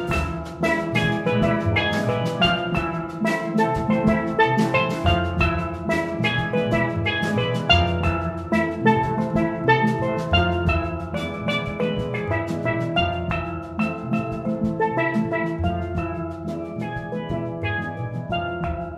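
Steel band playing: steel pans ring out a dense stream of quick struck notes in melody and chords, over a drum kit and the low notes of the bass pans.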